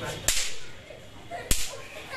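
Two small firecrackers going off with sharp bangs, about a second apart.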